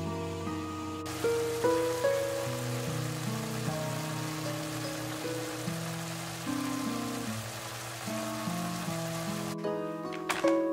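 Instrumental background music, a slow melody of held notes. Over it, from about a second in until shortly before the end, a steady hiss of pork and preserved mustard greens sizzling in a covered frying pan.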